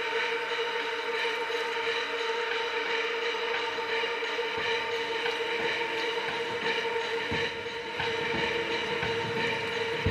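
Electronic music: a steady synthesizer drone held on one chord, with no drums or bass under it, in a quiet passage of a drum and bass mix.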